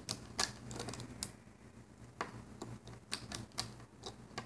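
Irregular light clicks and taps from fingers working rubber bands on a plastic loom, looping bands over its pegs.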